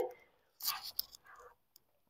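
A faint breathy sound, with a single small click about a second in and a softer breath after it, then quiet.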